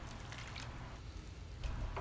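Faint sloshing and dripping of liquid dye as a ladle is dipped in a pot of red food colouring and poured over a net bag of boiled salted eggs.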